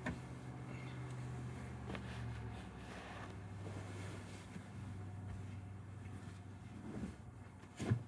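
Fabric blankets rustling and flapping as they are lifted and spread on the floor, with a soft knock right at the start and a louder one just before the end. A steady low hum runs underneath and drops slightly in pitch a couple of seconds in.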